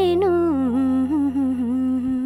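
A female singer humming a slow melodic phrase into a microphone. The phrase glides down in pitch about halfway through and then holds the lower note with small ornamental turns, over a steady held chord from the accompaniment.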